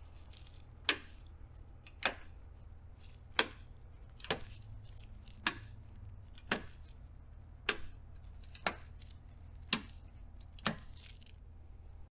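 Front-panel circuit breakers on a stack of EG4 LifePower4 LiFePO4 rack batteries being flipped, about ten sharp clicks roughly a second apart. Each battery is being power-cycled so that its new dip-switch address takes effect.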